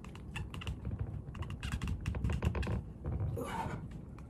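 Plastic ab-roller wheels rolling back and forth on a wooden floor and exercise mat, with a low rumble and a quick run of small rattling clicks.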